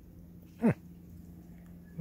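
A single short vocal sound, sliding quickly down in pitch, about two-thirds of a second in, over a faint steady hum.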